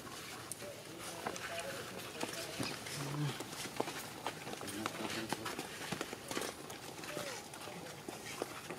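Macaques calling with a few brief squeaks and a short low grunt, over scattered clicks and rustles of dry leaves.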